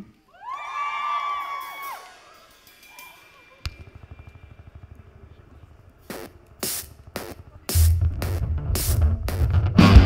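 A live indie-pop band starts a song: a few audience whoops, then drum hits about twice a second, and the bass and guitars come in loud with the full band near the end.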